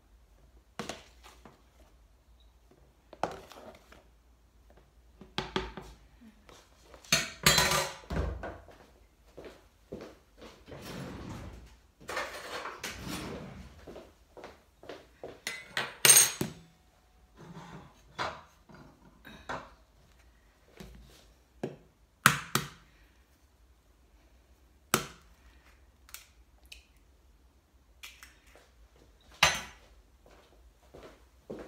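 Kitchen handling sounds from measuring out flour: a plastic scoop scraping and tapping in a tub of flour and against a plastic measuring jug, giving scattered knocks and clicks with a few longer scraping stretches. Near the end the plastic jug is set down on the glass-ceramic hob with a knock.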